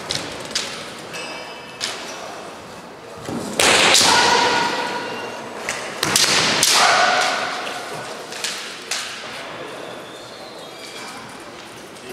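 Kendo bout: bamboo shinai clacking against each other and bare feet stamping on a wooden floor, with two long, loud kiai shouts from the fighters, about three and a half and six seconds in.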